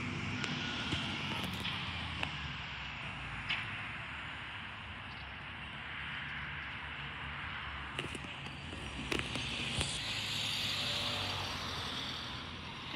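Garbage truck's diesel engine running a few houses away, a steady low rumble, with a higher hiss swelling near the end and a few faint knocks.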